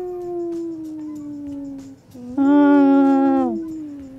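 People's voices singing long, drawn-out "ooo" notes, each sliding slowly down in pitch, with a second voice joining over the first about two seconds in.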